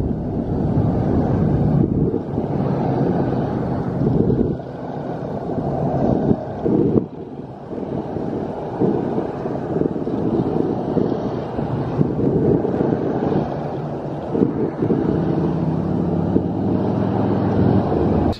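Steady roar of multi-lane freeway traffic passing below, with wind buffeting the microphone in uneven gusts.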